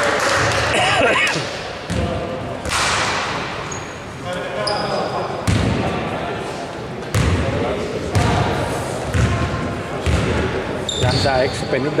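Basketball dribbled on a hardwood gym floor, bouncing about once a second, with players' voices in the hall.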